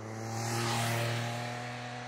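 Motorcycle engine running at steady revs as the bike rides along the road, over a rushing of wind and tyre noise. The sound swells to a peak about a second in, then eases slightly.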